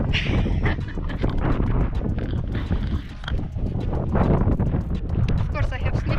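Wind buffeting the camera microphone, a steady low rumble, with a woman's voice and laughter over it that grows clearer near the end.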